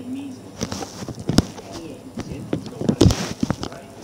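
Acoustic drum kit played with sticks in a few irregular hits rather than a steady beat: a sharp crack about a second and a half in and the loudest, deepest hit about three seconds in, with a hiss of cymbal between hits.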